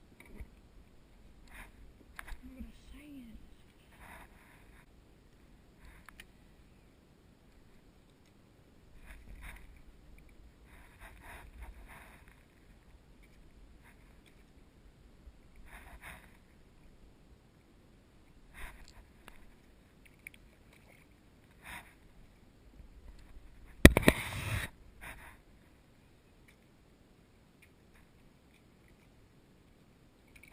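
Faint, scattered bumps and rustles of gear being handled aboard a plastic sit-on-top kayak. One loud bump with a short clatter comes near the end.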